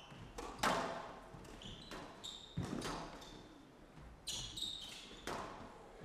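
Squash rally: sharp cracks of the ball off racket and walls, about one a second, with short high squeaks of shoes on the court floor between the shots.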